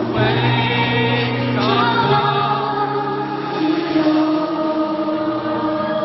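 Stadium crowd of many thousands singing along in chorus over a live pop band, with a steady held bass note under the voices.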